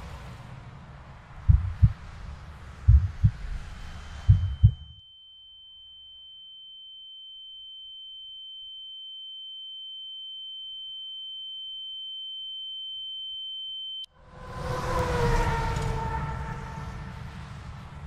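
Three pairs of low thumps over a background hiss. A single steady high-pitched electronic tone then slowly swells for about ten seconds over near-silence and cuts off abruptly. A loud rush of noise with falling tones follows.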